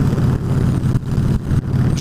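Victory Jackpot motorcycle's V-twin engine running steadily at highway cruising speed, heard from the rider's seat.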